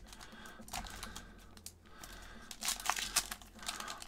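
Wrapper of an O-Pee-Chee hockey card pack crinkling in the hands as it is torn open, faint at first and louder crackling in the last second and a half.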